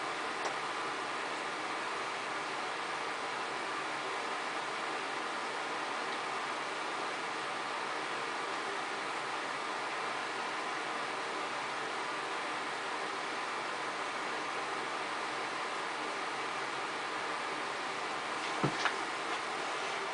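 Steady background hiss with a faint hum, unchanging, with a couple of small clicks near the end.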